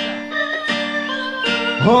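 Live band starting a song: a strummed chord opens it, then held guitar and keyboard notes ring under a melody line. A man's singing voice comes in near the end.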